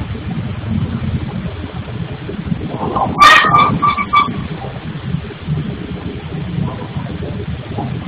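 Steady low rumble of machinery from a granite tile workshop next door, heard through a security camera's microphone. About three seconds in, a loud, high-pitched sound starts sharply and breaks off in short pieces over about a second.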